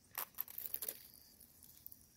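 Dry perilla stalks and seed heads rustling and crackling faintly, a quick run of small crackles in the first second, then near quiet.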